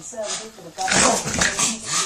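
A Staffordshire bull terrier whining and grumbling in a string of short vocal sounds that bend up and down in pitch, with breathy noise between them.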